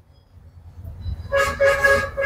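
A vehicle horn sounds with a steady, unchanging pitch from a little past halfway, over a faint low rumble.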